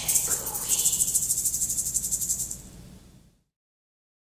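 A shaker rattling in a fast, even rhythm as the piece closes, fading out and stopping a little after three seconds in.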